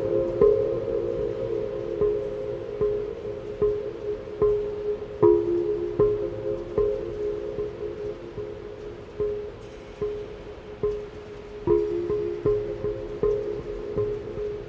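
Large glazed Korean earthenware jars (dok) struck in a steady pulse of a little over one stroke a second, each stroke ringing with a few low sustained tones that overlap. The strokes grow softer past the middle, then stronger again near the end, with the long reverberation of a large steel-walled dome.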